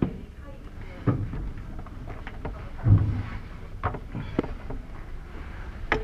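Indistinct voices murmuring in a room, broken by a few scattered knocks and thumps; the loudest is a dull thump about three seconds in.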